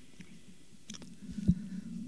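Quiet low hum on the countdown broadcast audio, with a few faint clicks and a short soft thump about one and a half seconds in.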